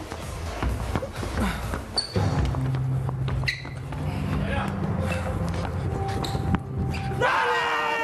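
A football bouncing on a ping-pong table and being headed and kicked back and forth in a head-tennis rally: a series of sharp thuds at uneven spacing. Loud shouting breaks out near the end as the point is won.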